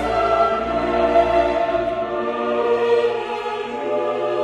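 Music of sustained choir-like voices over orchestra, holding long chords that shift slowly.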